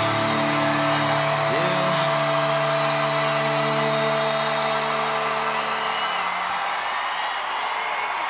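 A live rock band's final held chord rings out and fades away after about five or six seconds. Under it and after it, a concert crowd cheers steadily, with a few whistles near the end.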